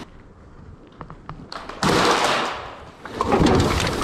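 A sudden loud thud against a steel dumpster that rings and dies away over about a second, after a stretch of small clicks, followed near the end by a louder rustling clatter of the trash inside.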